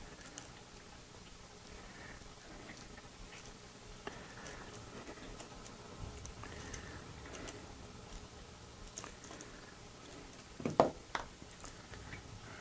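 Faint clicks and light scraping of small metal parts (a bearing idler pulley, screw and T-nuts) being pulled apart by hand and with needle-nose pliers, with two louder knocks near the end.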